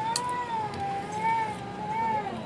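A cat giving one long, drawn-out meow that wavers slowly up and down in pitch.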